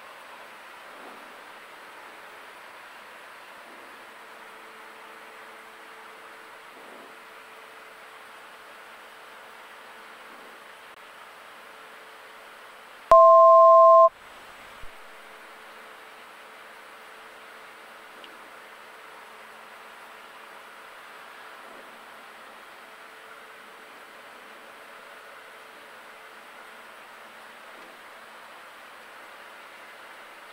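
Steady engine and cabin noise of a light single-engine airplane on final approach, heard as an even hiss. About halfway through, a loud electronic two-tone beep lasts about a second.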